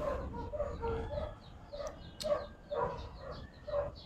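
A dog barking faintly, a run of short barks about two a second.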